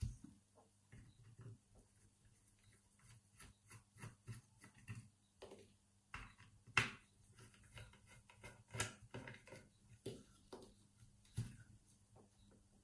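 Faint metallic clicks and scrapes of a screwdriver undoing the case screw of a four-lever mortice lock, and of the lock being handled on a tabletop, with a few sharper knocks.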